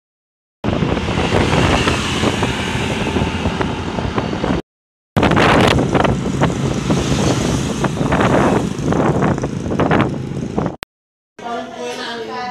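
Loud road and wind noise from a vehicle on the move, with wind rumbling on the microphone. It comes in two stretches that start and stop abruptly, with short silent gaps about five seconds in and near the end.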